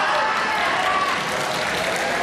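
Crowd applauding, with voices calling out over the clapping.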